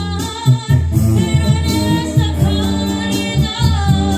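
A woman singing karaoke into a handheld microphone over a recorded backing track with a steady bass line.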